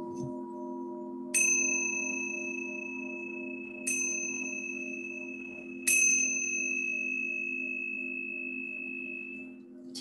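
A singing bowl rings on in a steady low hum. Over it a small high-pitched bell is struck three times, each strike ringing out and slowly fading.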